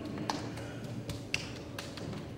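A handful of light, sharp taps and clicks scattered over a low steady room murmur, with one louder click a little past halfway.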